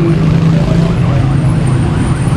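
Street traffic with a motor vehicle engine running nearby, a steady low drone.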